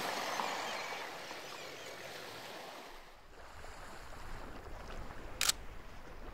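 Shoreline ambience of surf and wind: an even hiss that fades over the first three seconds, then a low rumble of wind and water building toward the end, with one brief sharp click about five and a half seconds in.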